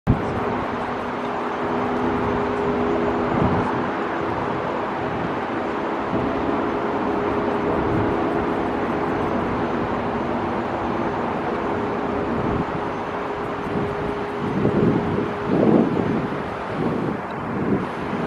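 Boeing 787-8 airliner's GEnx jet engines at takeoff thrust: a steady rushing jet noise with a steady low hum through most of it. From about fourteen seconds in, irregular low bursts break in over the jet noise.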